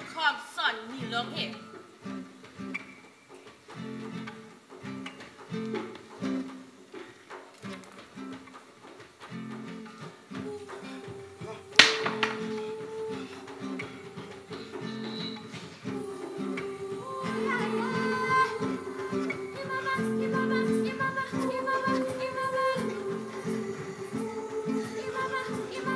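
Acoustic guitar playing a repeated plucked pattern as stage underscore. A single sharp crack sounds a little before halfway. In the second half, a woman's voice sings long held notes over the guitar.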